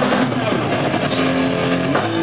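Doom metal band playing live: loud, heavily distorted electric guitar and bass holding long notes that change pitch a few times, in a muffled crowd recording.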